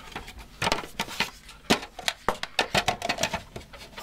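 Hard plastic parts clicking and knocking irregularly as a Rule pump is pushed down into a plastic shower drain box and snapped into place.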